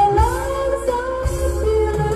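A woman singing a ballad into a microphone over a backing track with a steady bass, holding long notes.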